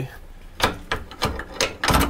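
Half-inch ratchet with a long extension and 21 mm socket working a stubborn rear shock bolt loose: a few separate metallic clicks and knocks about half a second apart, the heaviest near the end.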